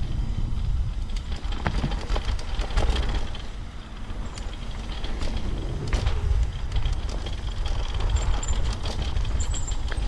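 Mountain bike descending a dirt trail, heard from a camera mounted on the rider or bike: wind buffeting the microphone as a heavy low rumble, tyres running over packed dirt, and the bike rattling with frequent sharp knocks over bumps.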